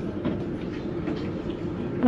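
Steady indoor shop background noise: an even, low hum with no distinct events.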